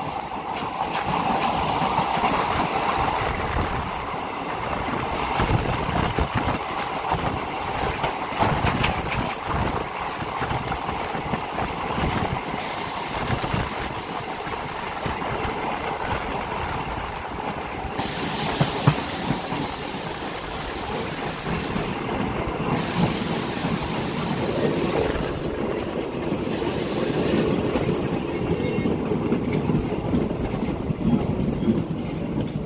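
Indian Railways passenger train running along the track, heard from aboard a coach: a steady rumble of wheels on the rails with scattered rail-joint clicks. From about ten seconds in, brief high-pitched squeals come and go, the longest near the end.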